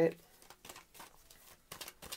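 Tarot cards being shuffled and handled by hand to draw a clarifier card: a run of faint papery flicks and clicks, a little louder near the end.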